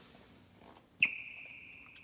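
A sharp click, then a steady high electronic beep from the Ferrari F430's warning chime, held for about a second.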